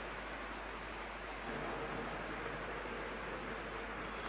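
Felt-tip marker writing on a whiteboard: faint, continuous strokes of the tip across the board.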